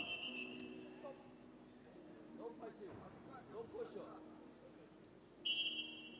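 Referee's whistle: a shrill blast fading away at the start and another sharp blast about five and a half seconds in, with faint voices in the arena between them.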